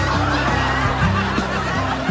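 Studio audience laughing and snickering over the slow instrumental backing of a pop ballad.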